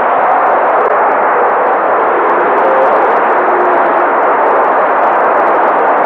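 An audience applauding steadily, an even clatter of many hands with no breaks.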